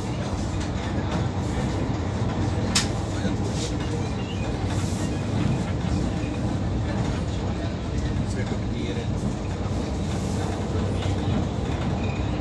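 Moving passenger train heard from inside the coach: a steady rumble of wheels on the track and the coach body, with one sharp click about three seconds in.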